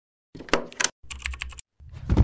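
Rapid keyboard-typing clicks in two short bursts, then a louder, deeper sound starting near the end, as intro sound effects.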